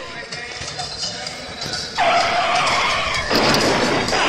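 Added sound effect of a car skidding: a sudden loud tyre screech starts about halfway in, and a rushing noise joins it near the end.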